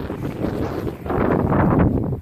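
Wind buffeting the camera's microphone, a rough rumble that grows louder about halfway through.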